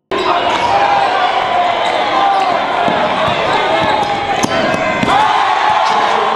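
Live basketball game sound in a school gym: crowd voices and shouting, with sharp thuds of the ball bouncing on the hardwood court now and then. The sound cuts in suddenly at the start and stays loud throughout.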